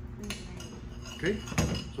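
A few light clinks of a metal spoon against a cup and a glass measuring jug as the crème brûlée coating is stirred and scooped.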